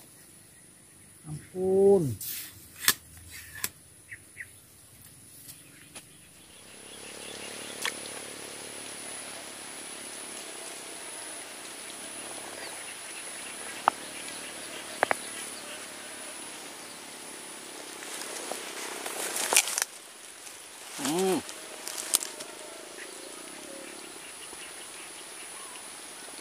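Outdoor swamp ambience with a thin, steady high-pitched whine, broken by a few sharp clicks and a brief rustle about twenty seconds in. Short hummed murmurs come about two seconds in and about twenty-one seconds in.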